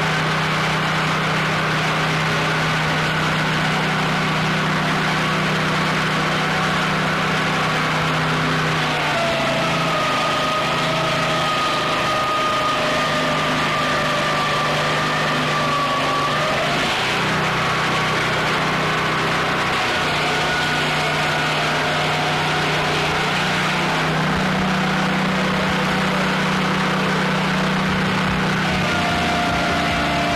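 Swing blade sawmill's engine running steadily under load while cutting a log, its low hum shifting every few seconds, with a higher whine that holds and wavers from about a third of the way in until just past halfway.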